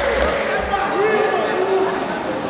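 Raised voices calling out across a large echoing sports hall over a background of crowd noise, with a few low thuds near the start.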